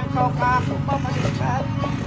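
Gabbang, a bamboo xylophone, struck in quick repeated strokes under a singer's wavering voice.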